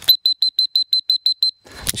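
Electronic beeper sounding a rapid run of about ten short, high beeps, six or seven a second, lasting about a second and a half, followed by a sharp click near the end.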